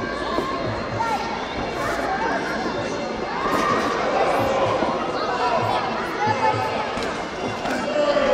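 Crowd of spectators around a Muay Thai ring talking and shouting over one another, with a string of short thuds and slaps from the bout.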